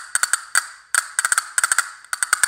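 Black Swamp Overture castanet machine played with the fingers in German grip: a quick rhythmic pattern of sharp clicks in short groups, each click with a brief bright ring.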